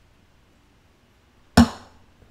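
A single sharp knock about one and a half seconds in, loud and brief with a short ringing tail, after a near-quiet pause.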